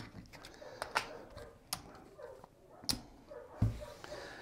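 Casino chips clicking as they are handled and set down on a craps table layout: a handful of separate sharp clicks spread out, with a soft thump near the end.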